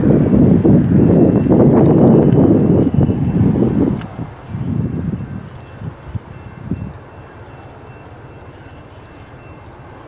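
Amtrak Pacific Surfliner train at the station: a loud, rough rumble that dies away after about four seconds, leaving a quieter steady background.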